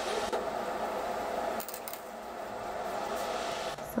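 Steady indoor room hum with a few light clicks about one and a half to two seconds in.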